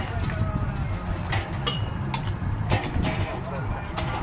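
Wind rumbling on the microphone, with people's voices faintly in the background and a few sharp knocks, about one and a half to three seconds in, as the wind car's large hollow shell is handled and set down on the tarmac.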